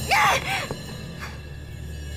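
A person cries out twice in quick succession near the start, over tense background music with a low, steady drone that carries on after the cries.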